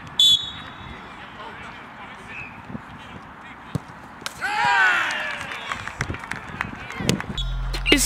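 Referee's whistle, one short high blast near the start, signalling that the penalty kick can be taken. Open-air noise follows, with a voice shouting loudly about four and a half seconds in.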